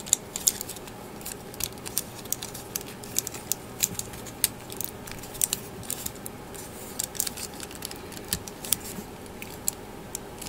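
Hard plastic parts of a model kit clicking and scraping against each other as they are handled and pressed together by hand: many small, irregular clicks.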